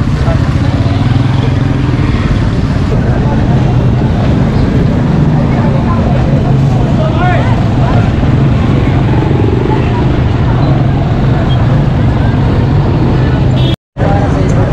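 Busy market street traffic: motorcycle and auto-rickshaw engines running close by with a steady low hum, mixed with crowd chatter. The audio cuts out for a moment near the end.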